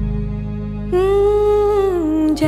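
Background music: a steady low chord, joined about a second in by a voice humming one long held note.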